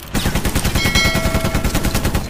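Machine-gun fire sound effect: a rapid, steady string of shots, about ten a second, starting just after the beginning, with a brief high ringing tone over it near the middle.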